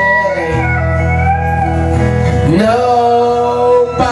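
Live country band playing an instrumental break: acoustic guitar accompaniment under a sustained lead line played on harmonica, with a note bent sharply upward about two and a half seconds in.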